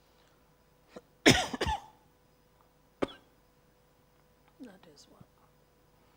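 A woman coughs twice in quick succession about a second in, the loudest sound here. A short sharp click follows a little later, then a couple of quiet spoken words.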